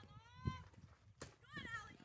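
Faint, distant high-pitched shouts, typical of softball players calling out encouragement from the field or dugout: one near the start and a wavering one in the second half. A couple of faint knocks come in between.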